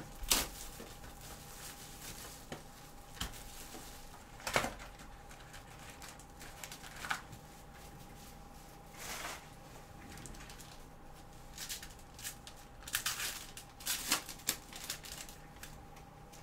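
A sealed hobby box of trading card packs being opened by hand: wrapper and cardboard tearing, and packs rustling and clicking as they are pulled out and set down, in scattered bursts that crowd together near the end.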